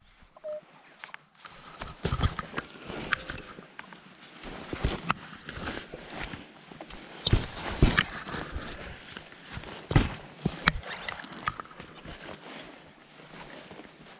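A digging tool chopping into grass turf and soil to cut out a plug over a metal-detector target, giving irregular knocks and crunches. A short beep from the metal detector comes about half a second in.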